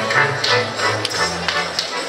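Slovak folk band of fiddle, double bass and accordion playing a lively dance tune, with sharp percussive hits from the dancers' boots about twice a second. The tune comes to its end near the close.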